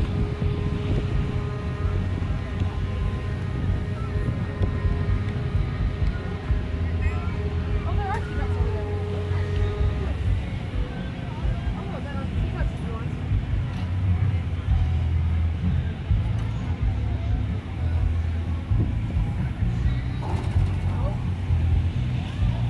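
Carnival ride machinery running with a steady low rumble, under a general fairground din of distant voices. A held tone sounds over it and stops about ten seconds in.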